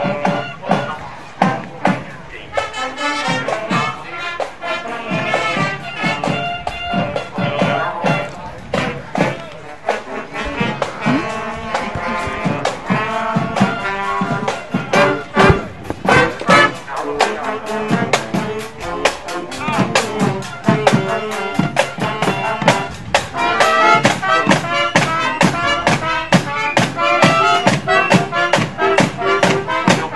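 High school marching band playing a tune on trumpets, saxophones and flutes over a steady drum beat.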